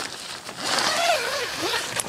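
Nylon tent fabric rustling and crinkling as a person inside pushes the door flap open, with a brief voice sound about a second in.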